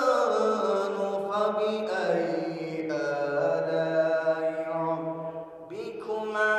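A man's single voice chanting a slow, melodic recitation, holding long, ornamented notes. The pitch falls at the start, and the voice drops away briefly near the end before coming back in.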